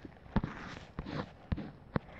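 Phone handling noise: about five light taps and clicks spread over two seconds, as fingers work the phone's touchscreen.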